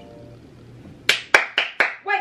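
The tail of a song fading out, then four quick hand claps, about a quarter second apart, starting about a second in.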